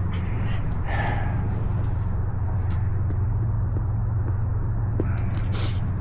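A dog moving about and settling down to lie, with a soft rustle about a second in and another near the end, and faint light jingling like collar tags, over a steady low hum.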